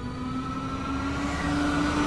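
Trailer sound-design riser: a low sustained drone that slowly rises in pitch while a hissing swell builds under it, growing steadily louder.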